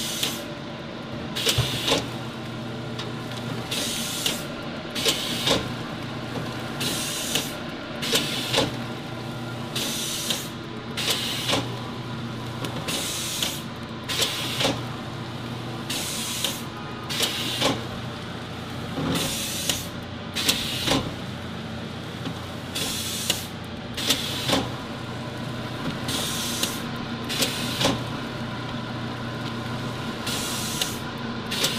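Shanklin A26A automatic L-bar shrink-wrap sealer running through its packaging cycle: a steady machine hum broken by short, sharp hisses of air, often two close together, every two to three seconds as the seal bar cycles on each package.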